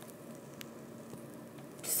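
Quiet room tone with a steady faint hiss, with one faint tick about half a second in; a girl's voice starts near the end.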